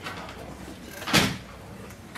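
A single loud thump about a second in, over the faint murmur of a large room.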